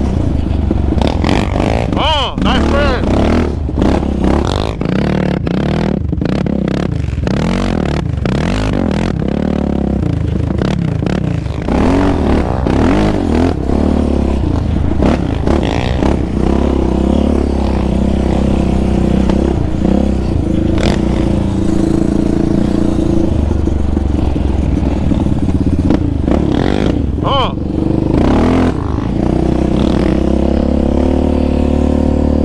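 Yamaha Raptor 700R sport quad's single-cylinder engine under way, revving up and down with the throttle, its pitch swinging repeatedly. Knocks and wind buffets on the mounted camera break in throughout.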